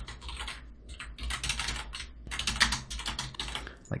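Computer keyboard typing: irregular quick runs of keystrokes as a line of code is entered.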